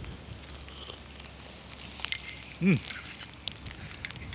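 A person sipping hot chocolate from a mug, with small sip and cup clicks about two seconds in, then a short pleased hum, "mm", at the taste.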